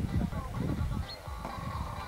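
Indistinct talking of people at an outdoor riding arena, with a brief held call in the second half.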